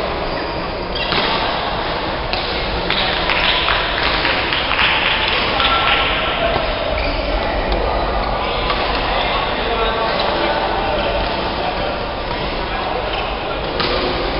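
Busy badminton hall: shuttlecocks struck by rackets at irregular intervals, with voices chattering in the background and the echo of a large hall.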